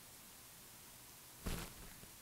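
Near silence: room tone, broken about one and a half seconds in by one brief, soft noise.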